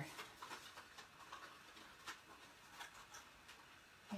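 Near silence with a few faint taps and rustles of scored cardstock being folded and handled as it is put together into a small box.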